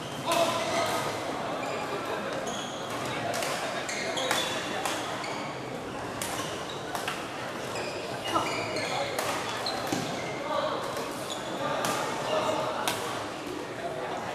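Busy badminton hall: the crack of rackets hitting shuttlecocks on several courts, over and over at irregular intervals, with short high squeaks of shoes on the court floor and a steady hubbub of voices, all echoing in the large hall.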